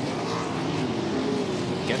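Wingless USAC sprint cars' 410 cubic-inch V8 engines running at racing speed on a dirt oval. The engine note is steady and wavers slightly in pitch as the cars work through the turn.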